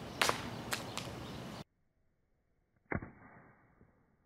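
Outdoor background noise with a couple of short knocks. Then, after a cut, a single sharp impact about three seconds in: an iPhone 5s hitting the ground after being thrown.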